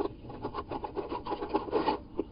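A wren moving about inside a wooden nest box, its feet and nest twigs scraping against the box's wooden walls. It makes a rapid run of short, scratchy scrapes, about six a second.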